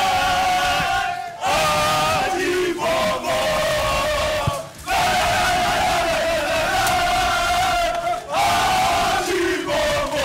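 A group of footballers chanting and shouting loudly in unison in a championship celebration chant. The chant comes in phrases of three to four seconds, each followed by a brief break.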